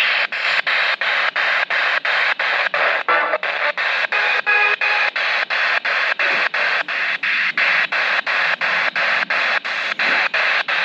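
P-SB7T spirit box sweeping through FM radio stations: a loud hiss of static chopped into short pieces about three times a second, with brief snatches of broadcast tone near the middle.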